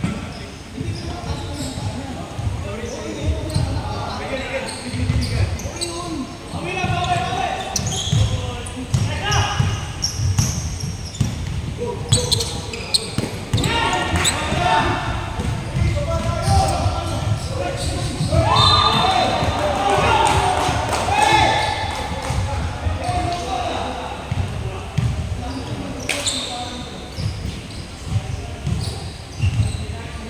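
Basketball game in a large echoing gym: a ball bouncing repeatedly on the wooden court amid players' shouts and calls, with a louder call about two-thirds of the way through.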